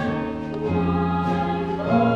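Live musical-theatre singing over a small pit orchestra, the voices holding long, slow notes.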